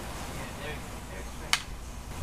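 Single sharp clack of two fighting sticks striking in a block, about one and a half seconds in, over a low rumble and faint voices.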